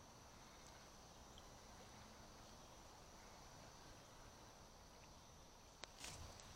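Near silence with a faint, steady high-pitched insect chorus, and a single light click near the end.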